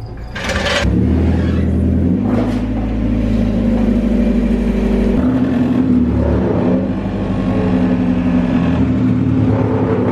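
Mazda Miata's engine running steadily after a short burst of noise about half a second in, its pitch stepping up and down a few times.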